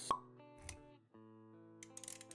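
Intro sound effects over music: a sharp pop just after the start, a soft low thud a little later, then sustained musical notes with a few light clicks near the end.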